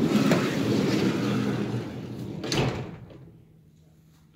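Mercedes-Benz Sprinter van's sliding side door being opened: it rolls back along its track for about two and a half seconds, then knocks into its open stop.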